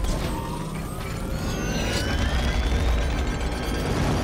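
Film sound effects of a giant mechanical robot churning through sand: a heavy low rumble with mechanical whirring and clanking, and several whining tones that slide up and down in pitch.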